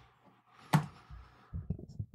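A single sharp click or tap about three-quarters of a second in, with a few faint low hums near the end.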